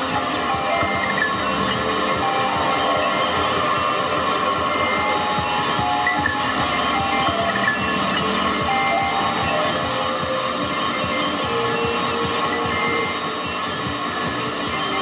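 Live electronic noise music played from laptops and electronics through amplifiers: a dense, steady wash of hissing noise with short held tones coming and going, and no beat.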